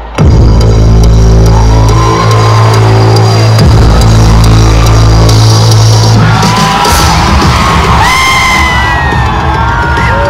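Loud live music over a stadium sound system: a sustained deep bass drone that gives way to a pulsing beat about seven seconds in, with high whoops over it near the end.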